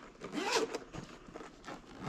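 Zipper on a hard-shell drone carrying case being unzipped in a few short pulls, the loudest about half a second in.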